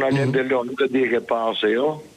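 Speech only: a phone caller talking in Albanian, the voice thin as it comes over the telephone line.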